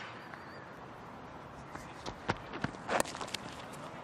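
Cricket stump-microphone sound: the bowler's footfalls at the crease, then a sharp crack of bat on ball about three seconds in. Steady low ground ambience runs underneath.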